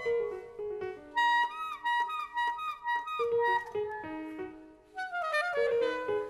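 Live jazz saxophone solo with a small band backing it: phrases of short and held notes with some bent pitches, a brief breath about five seconds in, then a new run of notes.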